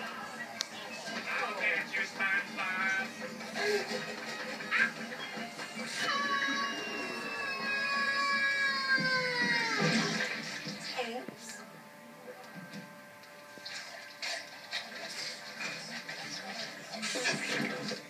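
Cartoon soundtrack playing from a television's speakers, heard in the room: music and sound effects, with one long falling glide about six to ten seconds in, followed by quieter held music notes.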